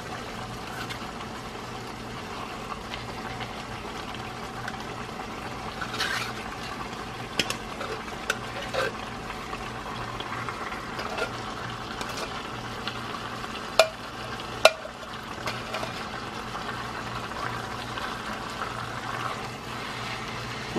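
Pan of ground beef in tomato sauce and stock sizzling steadily on the stove while refried beans are scraped out of a can into it with a utensil. Scattered sharp clicks and taps of the utensil against the can and pan, the two loudest about two-thirds of the way through.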